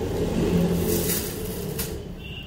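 Saree fabric rustling as it is unfolded by hand, over a steady low rumble that slowly fades.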